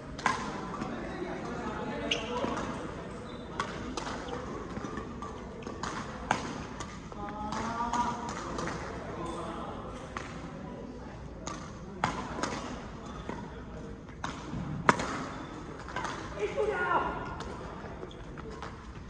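Badminton rackets striking a shuttlecock during doubles rallies: sharp, irregular hits, the loudest about three-quarters of the way through, with voices in between.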